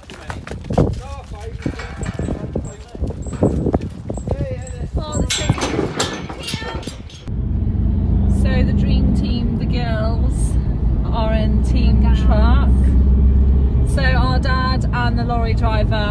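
Knocking and clatter as cattle are herded through a yard toward a livestock lorry. About seven seconds in, a cut brings the steady low road rumble inside a moving car's cabin, with voices over it.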